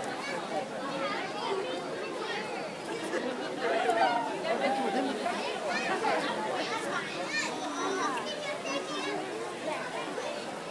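Crowd chatter: many voices talking over one another, children's among them, with a nearer voice louder about four seconds in.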